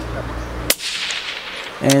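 A single shot from a .223 Remington rifle fitted with a silencer, about two-thirds of a second in: one sharp crack that trails off over about a second.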